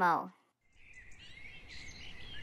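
Faint outdoor ambience of birds chirping fades in after a short silence. At the very start, a voice's last word trails off on a falling pitch.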